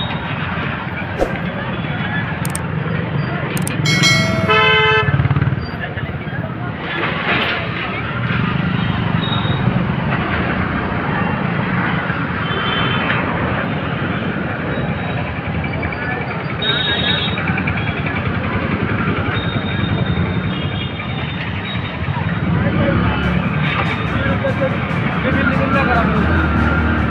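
Busy street traffic: motorcycle and rickshaw engines running, with voices in the crowd. A vehicle horn honks for about a second around four seconds in, and shorter honks follow later.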